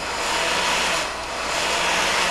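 Handheld electric heat gun running steadily, its fan giving an even rush of blown air. It is blowing hot air at a refrigerator's frozen water line to thaw it.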